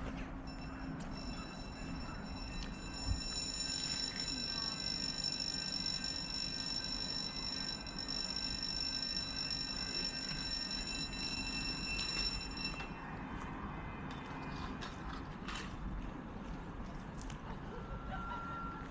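A steady high-pitched whine holds one pitch for about twelve seconds and then cuts off suddenly, over a low steady hum and outdoor background noise.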